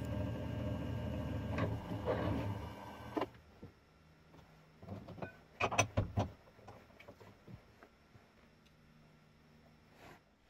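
A small bench mill-drill's motor runs steadily, turning a reamer in a gunmetal axle box, then is switched off about three seconds in. A few sharp metallic clicks and knocks follow as the vise is worked by hand.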